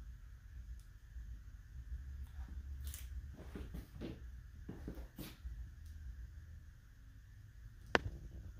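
Faint handling noises of small door-mounting parts: a few brief scratchy rustles in the middle and a sharp click near the end, over a low steady hum.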